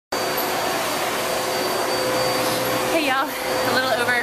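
Loud, steady blowing noise from air-handling machinery with a faint steady hum in it. A woman starts talking near the end.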